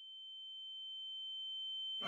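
Faint, steady high-pitched ringing tone with a fainter lower tone beneath it, slowly growing louder: the cartoon ear-ringing effect that follows a gunshot.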